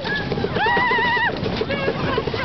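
Wooden roller coaster train running along its track with a fast, even clatter and rushing noise, while a rider lets out one long, wavering high yell about half a second in.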